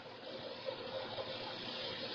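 A steady, even hiss with no music or beat.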